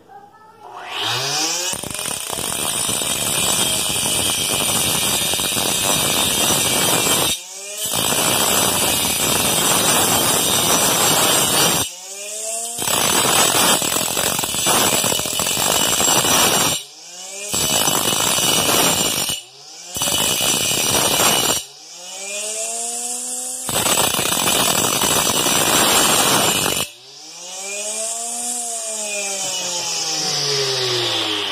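Homemade cutter driven by a hair-dryer motor, its small cutting disc grinding into an aluminium tube in about six long passes, with brief gaps where the motor's whine rises and falls in pitch. The disc is old and blunt, so it cuts slowly.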